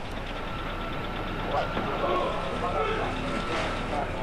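Indistinct voices of people talking over outdoor background noise, with a steady low hum under it all.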